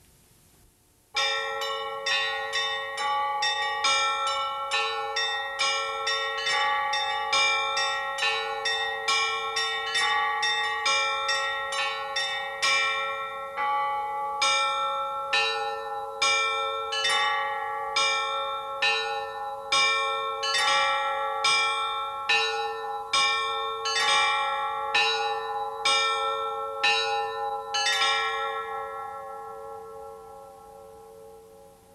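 A peal of church bells, beginning about a second in: quick strikes on several bells for about twelve seconds, then slower strikes about once a second, the ringing dying away after the last strike near the end.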